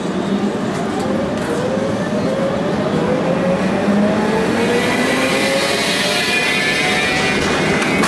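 Electric tram accelerating, heard from inside the car: the traction motor whine climbs steadily in pitch over the rumble of the running gear. A high hiss builds in the last few seconds as speed rises.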